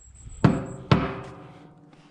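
Two knocks on a truck's metal fuel tank about half a second apart. The second leaves the hollow tank ringing with a few steady tones that fade out over about a second.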